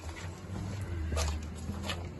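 Footsteps on dirt and gravel, a few separate crunches, over a steady low rumble.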